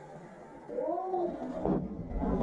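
A man's drawn-out yell, its pitch rising and falling, as a mountain biker loses control landing a dirt jump, with a thud of the crash near the end.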